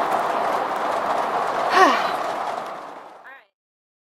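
Heavy rain falling on an RV, heard from inside as a steady, pretty loud hiss that fades out and stops about three and a half seconds in. A short breathy voice sound cuts in about two seconds in.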